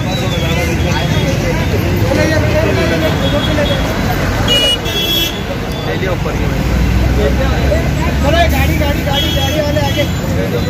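Street traffic running with voices talking in the background; a vehicle horn sounds briefly about five seconds in.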